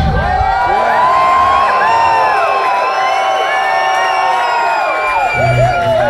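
Concert crowd cheering, shouting and whooping between songs, many voices rising and falling in pitch, just after a heavy metal song has ended. About five seconds in, a low pulsing bass tone starts under the cheering.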